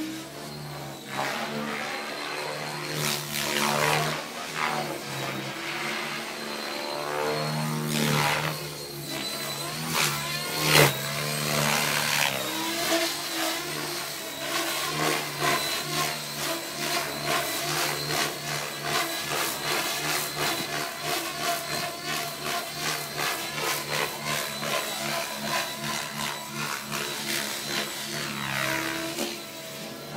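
KDS Innova 700 radio-controlled helicopter flying aerobatics: a steady high whine from the drivetrain under the whoosh of the main rotor, which surges loudly a few times in the first third as the rotor loads up in manoeuvres. Through the second half the rotor noise pulses in a fast, even rhythm.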